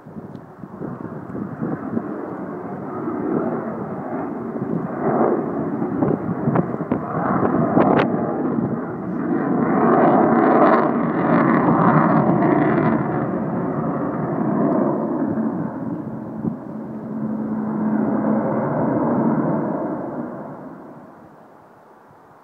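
Avro Vulcan jet bomber's four Rolls-Royce Olympus turbojets flying past: a loud jet rumble that swells to a peak about halfway through, then fades away near the end.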